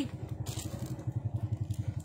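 Low, steady hum of an engine or motor running, pulsing about ten times a second.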